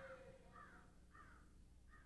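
Near silence, with a bird calling faintly four times in short, falling calls, about two a second.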